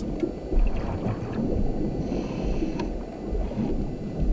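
Muffled, steady underwater rumble of moving water, with the low, dull quality of sound picked up by a submerged camera.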